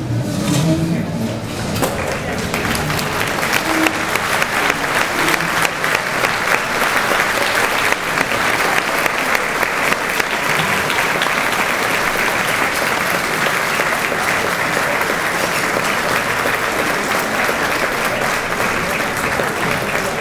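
A large audience applauding. The clapping builds up about two seconds in and then runs on steadily.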